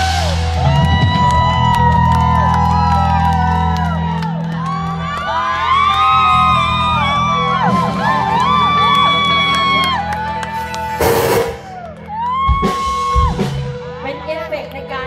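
Live band music through a PA system: a bending lead melody over steady, sustained bass notes. A short, loud shout cuts through about eleven seconds in.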